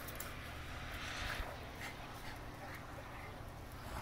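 Two dogs play-fighting, with growling and snarling that is loudest about a second in.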